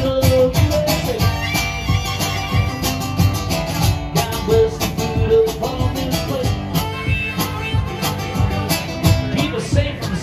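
Acoustic guitar strummed in a steady rhythm, an instrumental break between verses of a live country song.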